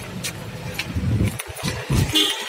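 A car engine running right beside the microphone, a low steady rumble that grows louder and more uneven about a second in, with a crowd's voices around it.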